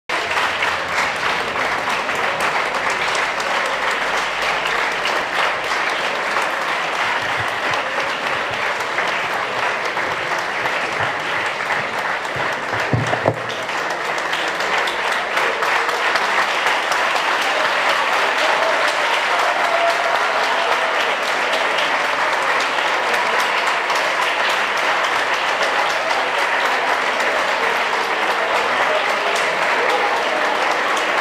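A large audience applauding steadily throughout, with one brief low thump about halfway through.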